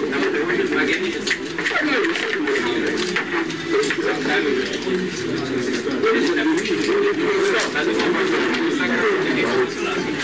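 Indistinct chatter of many voices at once, continuous and unbroken, with frequent short sharp clicks scattered through it.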